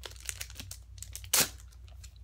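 Foil Pokémon card booster pack wrapper being crinkled and torn open: scattered crackles, then one loud rip about one and a half seconds in.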